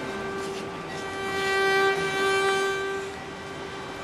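Bowed string music with one long, steady tone held for about three seconds, without vibrato, and some added noise in the middle.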